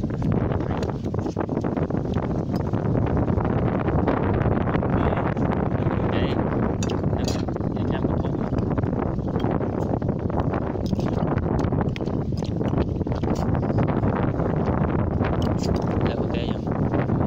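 Steady wind rumbling on the microphone, with scattered light clinks of metal spoons against ceramic plates during a meal.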